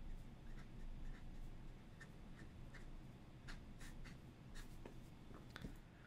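Fountain pen nib scratching faintly on paper in a series of short strokes as figures are written and boxed.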